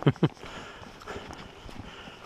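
A man's laugh trailing off in the first moment, then footsteps on a dirt forest trail as he walks.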